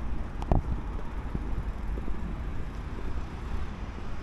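Wind rumbling on the camera microphone over the steady noise of street traffic, with one brief thump about half a second in.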